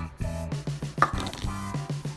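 Background music with a steady beat, over crunchy clicking as fingers press into foam-bead slime, with one sharper click about a second in.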